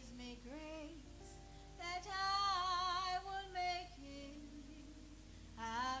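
A woman singing a slow gospel song solo into a microphone: a short phrase, then a long held note with vibrato, the loudest part, and a new phrase starting near the end.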